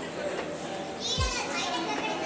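Children's voices at play, with a high-pitched child's shout about a second in and a short low thump at the same moment.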